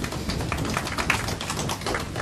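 Irregular light taps and clicks, several a second, over a low steady rumble.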